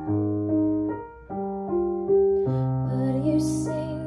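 Yamaha Clavinova CLP-745 digital piano played slowly: held chords over a bass note, changing about once a second.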